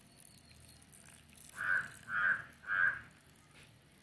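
A crow cawing three times in quick succession, each call short and harsh, about half a second apart.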